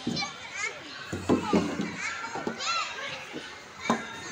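Small children playing: brief high calls and chatter from several young voices, with a few knocks of hollow plastic play pieces being moved about.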